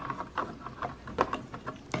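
Hardboard backing panel being set into a picture frame: a handful of small, irregular clicks and taps of board against frame.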